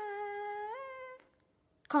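A boy's voice holding one long, drawn-out note for just over a second. It steps up in pitch about three-quarters of a second in, then stops. He starts speaking near the end.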